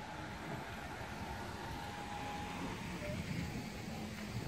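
Steady outdoor street noise: a low, even wash of distant traffic.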